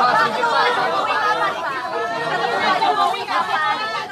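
A crowd of people talking over one another at close range: dense, overlapping chatter.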